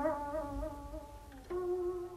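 Instrumental accompaniment to chanted Vietnamese poetry: a plucked string instrument sounds one long note at a time. The first note wavers in pitch, and a new, slightly higher note is plucked about one and a half seconds in and held.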